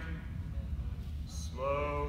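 A steady low hum of room noise. A man starts speaking near the end.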